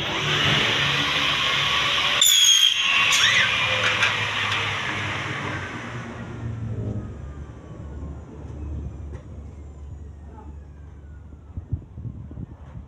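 Compound miter saw cutting an aluminium window profile: a loud, shrill screech of the blade through the metal over the first few seconds, then the blade's whine falling as it spins down.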